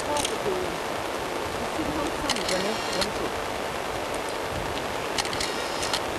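Steady rushing outdoor background noise, with a few faint, brief snatches of quiet voices.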